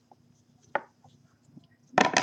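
Trading cards being handled and sorted by hand over a tabletop, mostly quiet, with one short sharp tap a little under a second in.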